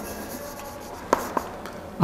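Chalk writing on a chalkboard: soft scratching strokes, with two short taps of the chalk a little after one second.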